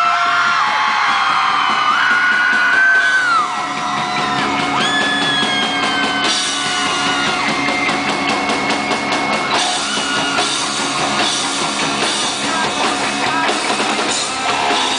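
Live rock band starting a song through a concert PA: drum kit and guitars. Audience members scream over it in the first few seconds, and the full band comes in more loudly about six seconds in.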